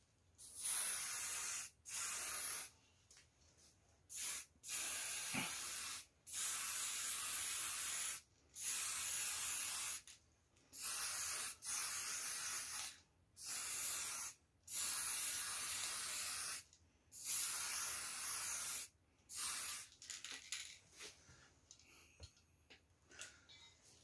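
Aerosol spray-paint can hissing in about a dozen separate bursts, each half a second to two seconds long, as lamp parts are spray-painted. Small handling clicks and rustles follow near the end.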